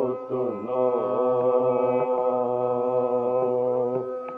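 Carnatic vocal singing in raga Kalavati: the voice winds through ornamented pitch bends for the first second or so, then holds one long steady note over a steady drone.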